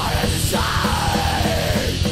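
Thrash/groove metal song with distorted guitars and fast drums, over which a long yelled vocal note slides down in pitch.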